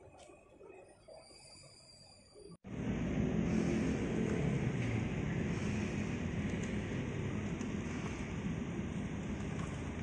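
A Honda Brio Satya hatchback rolling slowly over brick paving blocks, its engine running under a steady rumble of tyres on the pavers. The sound starts suddenly about two and a half seconds in, after a faint, quieter stretch.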